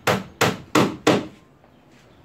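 Hammer nailing a plywood sheet onto a wooden boat frame: four quick, evenly spaced blows, about three a second, stopping a little past halfway through.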